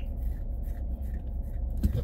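Steady low rumble of a pickup truck's running engine heard inside the cab, with a few faint light ticks.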